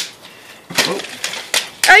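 Partly filled plastic water bottle flipped through the air and landing upright on a metal box top with a few short knocks near the end.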